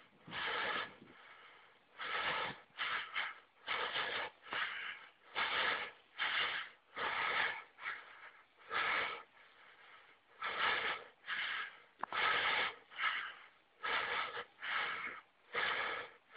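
Heavy, rhythmic breathing of a cyclist under effort, with a hard breath roughly every second, close to the microphone.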